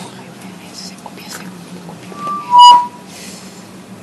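Short burst of microphone feedback through a PA: a brief faint tone a little above 1 kHz, then a loud squeal near 1 kHz lasting under half a second, just past the middle. Faint room noise with a low hum around it.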